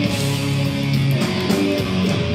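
Live hardcore/crossover thrash band playing loud: distorted electric guitar chords over drums, with cymbal crashes about a second in and again near the end.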